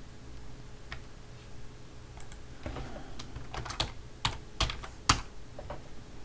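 Typing on a computer keyboard: a faint click about a second in, then a quick run of keystrokes from about halfway, the last one the loudest.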